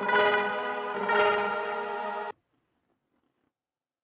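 Sustained synth chords from an Arturia Analog Lab software instrument playing back a programmed pattern: a chord change about a second in, then playback stops abruptly a little over two seconds in, leaving silence.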